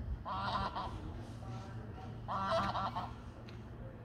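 Domestic goose honking in two short bursts of quick, nasal honks, one near the start and one about halfway through.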